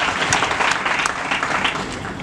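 A crowd applauding: many hands clapping together, easing off slightly toward the end.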